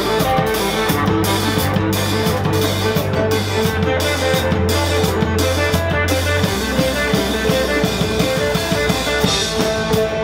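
Live band playing a passage without singing: strummed mandolin and electric guitar over bass and drum kit. The bass holds a low note for several seconds and moves to another about two-thirds of the way through.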